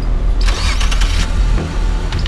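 A car engine starting and then running with a steady low rumble, with a brief noisy burst about half a second in.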